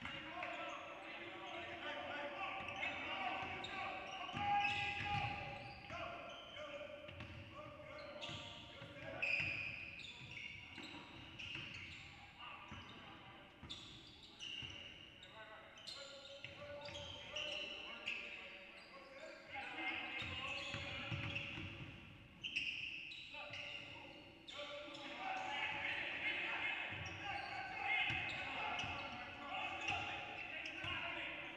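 Basketball game sound in a large, echoing gym: a ball bouncing on the hardwood court amid players' and coaches' voices calling out across the court.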